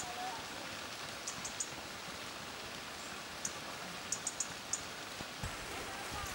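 Steady hiss of light rain, with a few faint high ticks scattered through it.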